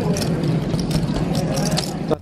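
Poker-room background noise: a steady low hum under a murmur of voices, with many small sharp clicks of casino chips being handled at the table.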